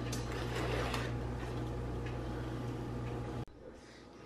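A steady low hum with faint scraping and tapping from flour being scooped into a measuring cup. It cuts off abruptly about three and a half seconds in.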